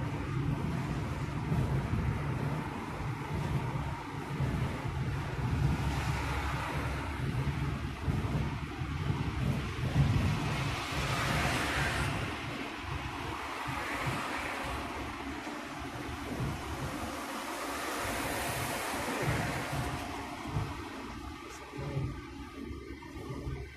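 Road noise from a car being driven: a steady low rumble of engine and tyres, with a rushing hiss of wind that swells and fades several times.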